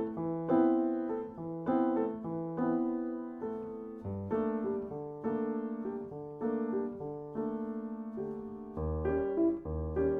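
Solo piano playing a classical-style piece in ringing, fading chords struck about once or twice a second, with deep bass notes joining near the end.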